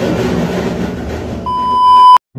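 A steady, high test-tone beep, the kind laid over TV colour bars in a video edit. It starts about three quarters of the way through, grows louder and is the loudest sound here. Before it there is a muffled, noisy room sound.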